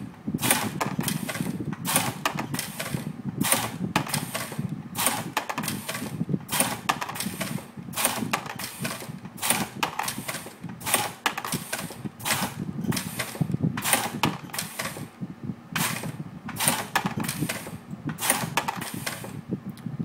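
Air-driven Star sizer-lubricator cycling under foot-pedal control: a 10-inch double-acting air cylinder drives the ram through stroke after stroke, sizing cast bullets. Each stroke is a short, sharp sound, coming about one to two times a second in a steady rhythm over a low rumble.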